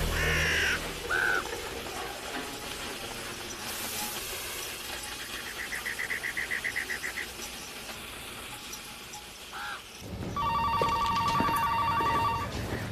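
Quiet outdoor ambience with a few short bird calls and a brief rapid trill. About ten seconds in, a telephone starts ringing with a fast, pulsing electronic ring.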